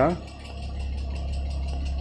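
Porsche Cayman 987's flat-six engine idling: a steady low hum.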